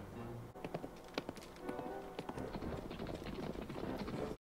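Film soundtrack: orchestral score playing over a run of quick, irregular sharp knocks.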